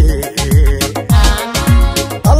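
Somali wedding pop song playing with a steady beat: a deep electronic kick drum that drops in pitch on each hit, about twice a second, under a keyboard melody.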